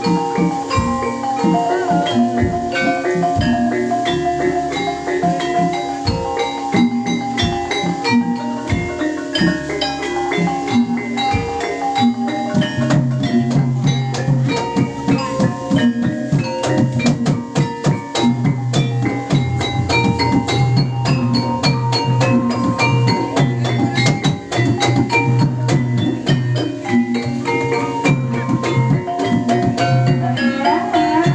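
Javanese gamelan music accompanying a mask dance: metallophones ring out short held notes over frequent drum strokes. A low steady hum joins in about twelve seconds in.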